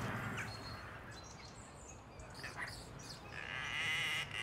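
Quiet outdoor ambience with a few short bird chirps, then a longer animal call starting about three seconds in.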